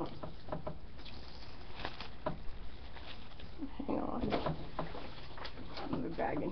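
Rummaging inside a fabric tote bag: rustling and crinkling of plastic bags being handled, with scattered light clicks and knocks.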